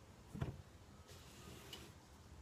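Faint handling sounds from damp, freshly steamed wool fabric being unwrapped: a single short knock about half a second in, then a brief soft rustle.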